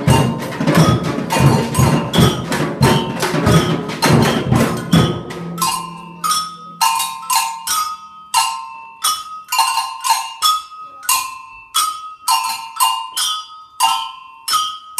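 A children's samba band plays big samba drums and small hand-held percussion together. About five seconds in, the deep drums drop out, leaving only quick, high-pitched clinks from the hand percussion, alternating between two pitches, to carry the rhythm.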